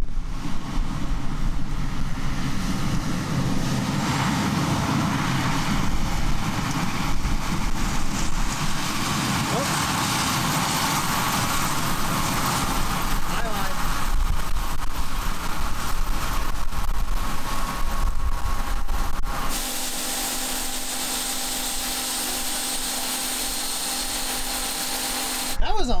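John Deere combine running as it harvests corn, with wind buffeting the microphone as a heavy low rumble. About three-quarters of the way through, the sound cuts to a quieter, steadier machine hum.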